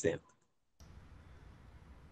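The last syllable of a man's speech, then a pause of near silence: dead quiet for about half a second, then faint steady hiss until the next voice.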